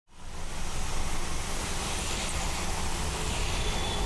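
Steady rain falling onto a puddle, an even hiss with a low rumble underneath, fading in at the very start.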